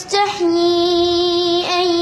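A boy's voice reciting the Quran in a melodic chant, drawing out one long steady note after a quick breath at the start.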